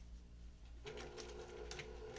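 Sewing machine starting about a second in and running slowly, a steady motor whine with a quick run of needle ticks, as it stitches down a quilt's binding.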